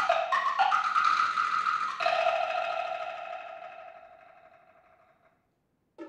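Solo multi-percussion played with sticks: a fast run of high, pitched strokes on wood blocks and drums, then about two seconds in a last stroke whose ring fades away over about three seconds, followed by about a second of silence.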